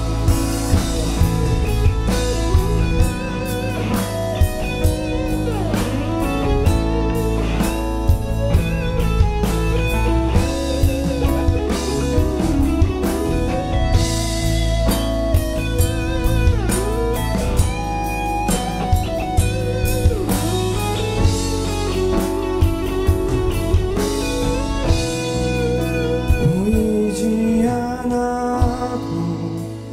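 Live worship song: several voices singing together over acoustic guitar and a steady beat.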